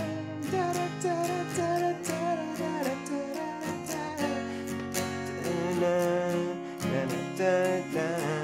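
Acoustic guitar, capoed at the first fret, strummed in a steady down, down-up, up-down-up pattern, changing chords from G to F to C.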